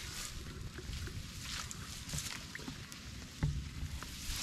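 Grass rustling and shallow water sloshing as someone moves through a flooded field, over a low rumble. There is a dull knock about three and a half seconds in.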